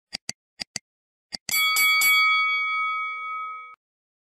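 Sound effects of a like-and-subscribe animation: two quick pairs of mouse clicks, then a bell chime struck about three times in quick succession that rings on for about two seconds and cuts off suddenly.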